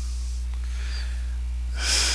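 A man's single sharp, breathy intake or exhale near the end, over a steady electrical mains hum.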